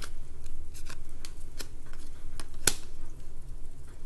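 Tarot cards being shuffled and handled by hand: scattered soft flicks and snaps of card against card, with one sharper snap about two-thirds of the way through.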